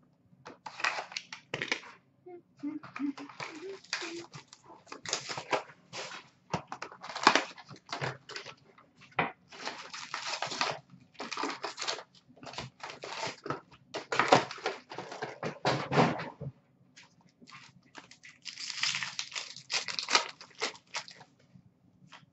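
Upper Deck SP Authentic hockey card packs being torn open by hand: wrappers crinkling and tearing in a long run of short rustling bursts, with the cards handled in between.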